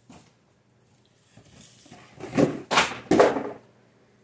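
A box knocked off onto the floor: a brief knock, then a rustle and three loud clattering crashes in quick succession.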